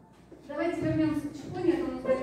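Speech: a woman's voice talking, starting about half a second in after a brief quiet gap.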